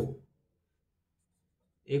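Near silence in a pause between a man's spoken words, with the end of one word at the start and the next word beginning near the end.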